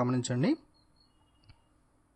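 A man's voice stops about half a second in, then near silence broken by a single short click.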